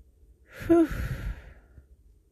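A person's heavy sigh about half a second in: a brief voiced sound falling in pitch, then a breathy exhale that fades away.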